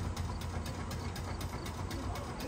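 Rail vehicle standing and running: a steady low hum with a fast, even ticking over it.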